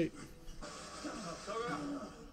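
Television drama soundtrack: men's voices grunting and urging 'come on' and 'go, go, go' over a tense music score.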